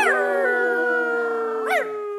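Human voices howling like wolves: several long notes held together, with a quick rising and falling yelp at the start and another near the end.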